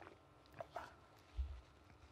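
Faint handling sounds: a few light clicks and short squeaks, then low thuds as a person gets up from a chair.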